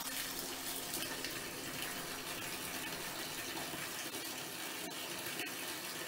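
Water running steadily out of the shower hose of a Mira Advance ATL electric shower while its bleed button is held down. The shower is being primed, flushing air out of the unit.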